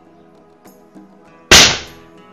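A .22 ogival slug from a Caçadora+ air rifle striking and punching through a thin lead plate: one sudden, very loud smack about one and a half seconds in, dying away within half a second, over background guitar music.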